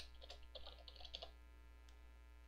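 Faint typing on a computer keyboard: a quick run of keystrokes in the first second and a half, then one more near the end.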